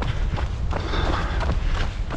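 Wind rumbling on a handheld phone microphone during a run, with faint running footfalls on a paved path.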